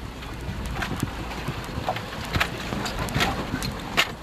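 Four-wheel-drive vehicle jolting over a rough dirt trail: a steady low rumble with scattered knocks and rattles from the bumps.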